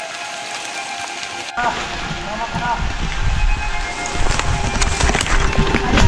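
Handling noise from a handheld camera carried on foot through undergrowth: rustling, bumping and footsteps, which grow much louder about a second and a half in.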